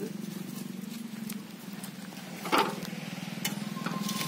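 Hand-pushed single-wheel cultivator with steel tines working dry soil: scraping and crunching through the earth, with scattered clicks and knocks, the loudest about two and a half seconds in, over a steady low hum.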